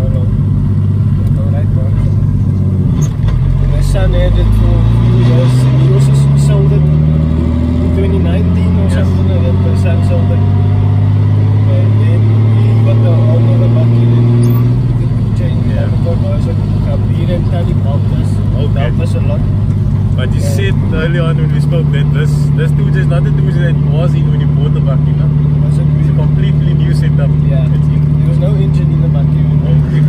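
Toyota Hilux's swapped-in 2JZ-GTE turbocharged straight-six heard from inside the cab while driving, rising in pitch as it pulls through the revs over the first half, dropping at a gear change about halfway through, then holding a steady drone for the last third.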